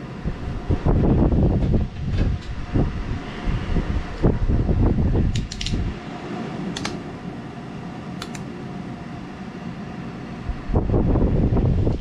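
A knife blade being handled on a wooden board and fastened down with a one-handed plastic bar clamp: irregular knocks and rubbing, a few sharp clicks as the clamp is tightened, and more handling thumps near the end. A steady fan-like hum runs underneath.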